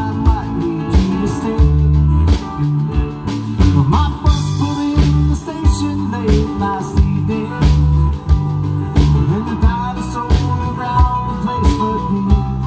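Live rock band playing an instrumental stretch between sung lines: guitars and keyboards over a drum kit keeping a steady beat of about two strikes a second.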